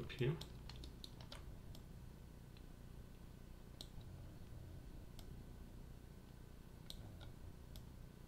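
Faint, scattered computer mouse and keyboard clicks: a quick cluster of clicks about a second in, then single clicks every second or two.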